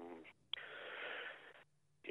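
A man drawing a breath over a telephone line: a breathy hiss lasting about a second between phrases, then the line drops to dead silence.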